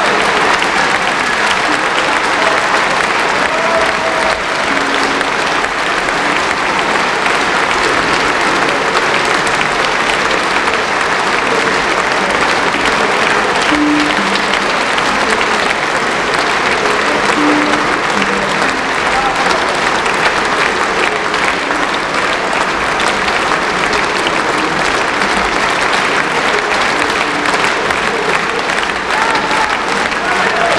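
A large concert-hall audience applauding in a steady, sustained ovation.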